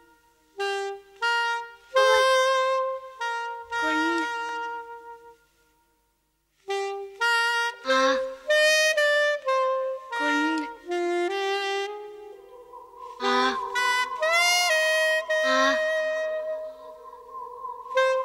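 Saxophone playing a slow melody in short separated phrases in a downtempo electronic track, with a break of about a second near the middle. About two-thirds of the way in, a steady held tone comes in beneath it and a few sax notes bend upward.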